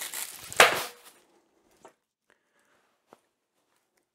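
Clear plastic watch pouch crinkling as a metal-bracelet watch is pulled out of it, with one sharp rustle about half a second in, then a couple of faint clicks.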